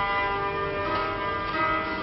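Live acoustic music from a plucked string instrument and a fiddle with a metal horn, playing long held, ringing notes.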